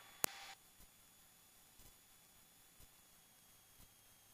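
Headset radio audio in a Cessna 172: a sharp click about a quarter second in with a short hiss, the end of the pilot's transmission as the push-to-talk is released. Near silence follows.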